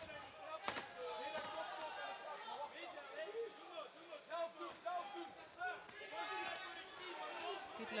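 Voices calling and shouting around the ring in a large hall, with one sharp smack under a second in.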